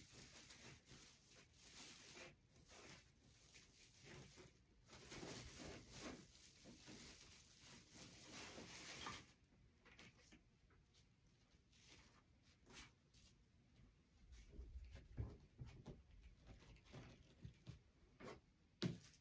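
Faint rustling and crinkling of mesh ribbon being handled and arranged by hand, fading about halfway through. A few soft taps and clicks follow.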